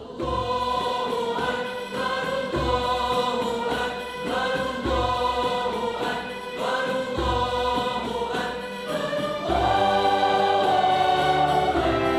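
Choir singing with a symphony orchestra and Arabic percussion, starting suddenly on a loud chord. Deep drum strokes fall about every two and a half seconds under held chords, and the music swells fuller and louder near the end.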